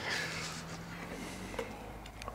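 Faint sound of a knife cutting through a crisp grilled flatbread on a wooden cutting board, with a small tick about one and a half seconds in.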